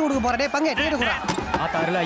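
A man talking rapidly in Tamil, with a single knock or thump about halfway through.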